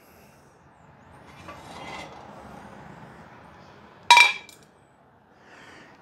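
Extruded aluminum mounting bars being handled, with a faint noisy swell of handling, then a single sharp metallic clink with a brief ring about four seconds in as the metal knocks together.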